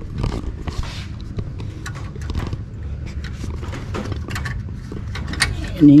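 Irregular clicks, taps and rustling from close handling: the camera being moved about and gloved hands working at a headlight bulb's plastic cable connector inside a car's wheel arch, over a low steady rumble.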